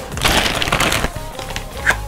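A plastic packaging bag crinkling and rustling as it is pulled open, loudest in the first second and then settling into scattered crackles, over background music.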